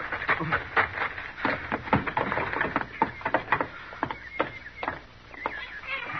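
Radio-drama sound effects: irregular footsteps and knocks on wooden boards as people come in, with a newborn baby's faint crying.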